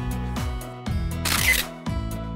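Background music with a steady beat, and about one and a half seconds in a short burst of noise over it.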